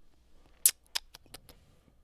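A handful of short, sharp clicks in a pause between words, the first and loudest about half a second in, then four or so fainter ones over the next second.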